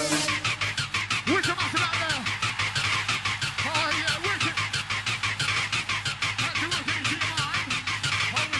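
Mid-1990s rave techno from a DJ mix in a breakdown: fast, even percussion ticks about eight a second with short swooping synth sounds that rise and fall, and no kick drum or deep bass.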